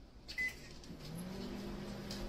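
Microwave oven being started: a click and a short electronic beep about half a second in, then the oven's hum comes on, rising briefly and settling into a steady low drone.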